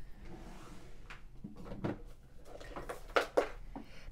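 A few quiet knocks and clicks of things being moved about by hand while a boxed bottle of ink is fetched, the loudest couple near the end.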